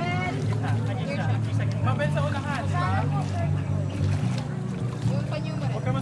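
Several people's voices talking and calling out over one another, with a steady low hum underneath.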